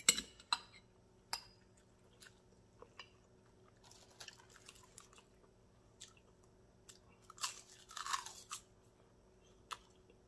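Close-miked mouth sounds of a person eating: a few wet clicks and smacks of chewing early on, then a short burst of crunching about seven and a half seconds in as a crisp, lightly seasoned roasted seaweed sheet is bitten and chewed.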